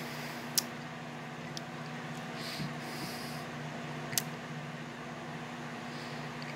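A glass of soda being sipped and set back down: a few sharp light clicks, the loudest about half a second in and another about four seconds in, and a soft breathy sound midway, over a steady low hum.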